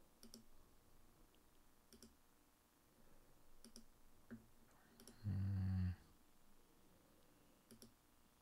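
Scattered quiet clicks at a computer workstation, about five in all, each a quick double tick. A little past the middle, a short low buzz lasts about half a second and is the loudest sound.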